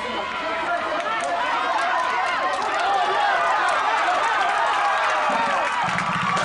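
Football crowd in the stands cheering and yelling, many voices at once, swelling louder over the first few seconds and then holding.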